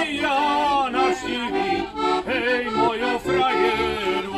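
Heligonka, a diatonic button accordion, playing a lively folk tune while several men sing along.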